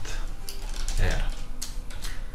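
Computer keyboard being typed on: a few separate keystrokes.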